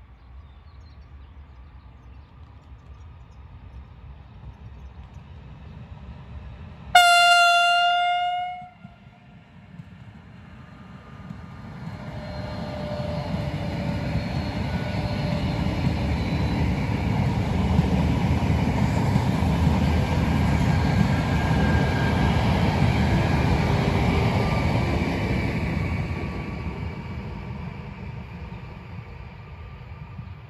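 Frecciarossa ETR600 high-speed electric train giving one steady horn blast of just under two seconds, then passing close by at speed. Its running noise swells from about twelve seconds in, holds, and fades away near the end.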